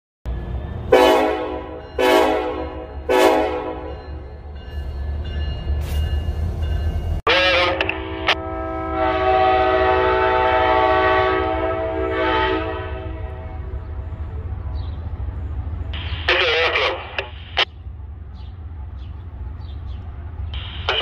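Amtrak passenger locomotive's horn: three short blasts about a second apart, then one long steady blast of several seconds, over a continuous low rumble.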